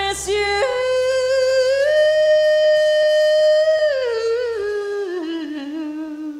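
A woman singing live with a band, holding one long note steady for about two seconds before letting it fall away in a slow downward slide. A low sustained band note sits underneath and drops out about three-quarters of the way through.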